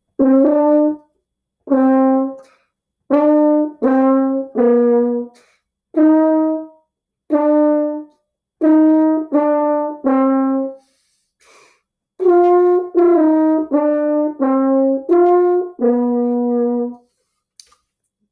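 French horn played solo: a simple melody of separate tongued notes in the middle register with short gaps between them. There is a pause a little past the middle, and the last phrase ends on a longer held note.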